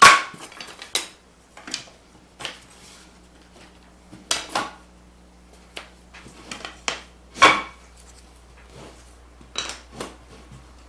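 Wooden boards and thin wooden spacer strips knocking and clattering on a worktable as they are slid and set into place: about a dozen scattered knocks, the loudest right at the start and about seven and a half seconds in.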